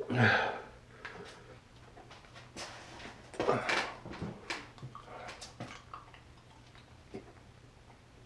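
A man breathing hard and blowing out sharply through his mouth against the burn of an extremely hot chili-extract lollipop, with one strong breath out at the start and another about three and a half seconds in. Small mouth and handling clicks fall in between.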